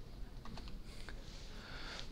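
A few faint clicks of a laptop key being pressed, over quiet room tone.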